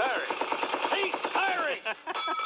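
Rapid machine-gun fire sound effect, an even run of fast shots with voices mixed under it, stopping just before the end.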